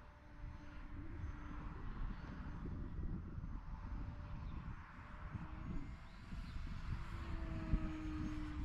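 Faint, steady hum of a HobbyZone Carbon Cub S2's brushless electric motor and propeller flying high overhead, its pitch shifting slightly with the throttle, over gusty wind rumble on the microphone.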